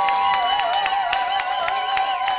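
Electric guitar holding two sustained, bent notes, the lower one shaken with a wide vibrato, over a few light percussive clicks.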